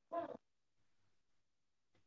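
A single short pitched call, about a third of a second long, just after the start; the rest is near silence.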